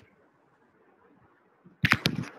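Near silence, then one sudden, loud, sharp pop near the end.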